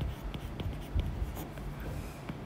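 Stylus writing on a tablet's glass screen: a few light taps and short scratches as letters and a bond line are drawn.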